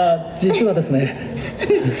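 Recorded Japanese film dialogue from the show soundtrack: a character's laughing voice, a short giggle followed by the word "sou".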